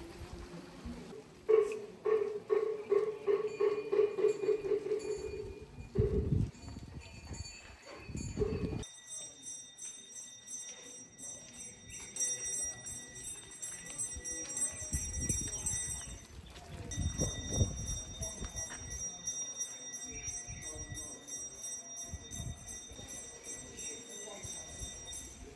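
Rapid, regular knocking over a steady pitched ring for a few seconds, then, after a pause, small bells jingling in a steady rhythm with a high ringing tone.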